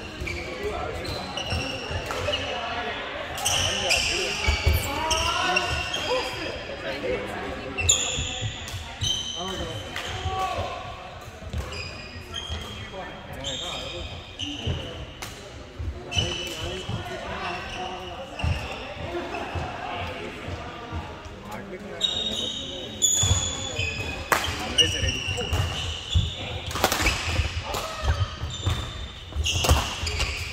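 Badminton rallies on a wooden sports-hall floor: rackets striking shuttlecocks with sharp cracks, sneakers squeaking in short high chirps, and feet thudding on the court, all ringing in a large hall. Voices murmur beneath.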